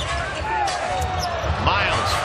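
A basketball being dribbled on a hardwood court, with sneakers squeaking in short gliding chirps as players run up the floor.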